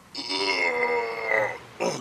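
A man's single drawn-out, voice-like noise, like a long groan or burp, held for about a second and a half at a fairly steady pitch.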